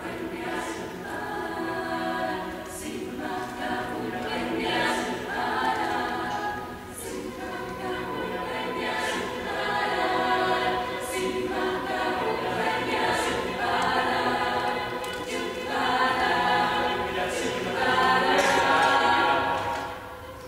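Mixed youth choir singing a cappella: sustained chords in phrases that swell and fade every couple of seconds, growing louder toward the end.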